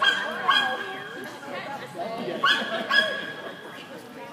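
A dog barking: a sharp, high bark about half a second in, another near two and a half seconds, and a shorter one just after, over indistinct voices.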